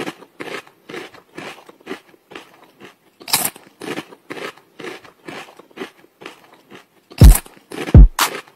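Crunchy snack being chewed close to the microphone, several crunches a second, with one louder crunch about three and a half seconds in. Near the end, two loud deep booms that drop in pitch.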